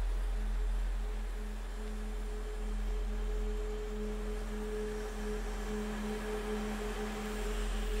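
Opening of a dance track: a steady drone of two pure tones an octave apart, the upper one swelling slightly a few seconds in, over a low hum.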